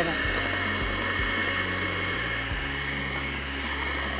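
Electric hand mixer running steadily, its twin beaters whipping butter cake batter in a glass bowl.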